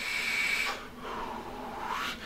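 A long inhale through a vape: a steady airy hiss with a faint high whistle as air is drawn through the device, for about the first second, then a softer, lower breathy hiss as the vapour is blown out.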